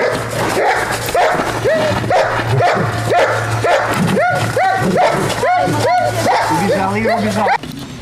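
A dog barking in a fast run, about two to three barks a second, during guard-dog protection work against a helper's bite sleeve.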